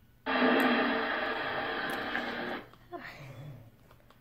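A burst of sound played back through a small device speaker: it starts suddenly a moment in, runs about two and a half seconds with a muffled, thin top end, and cuts off abruptly.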